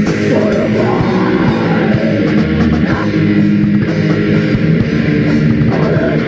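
Black metal band playing at full volume: electric guitar, bass and drum kit together in one dense, unbroken wall of sound.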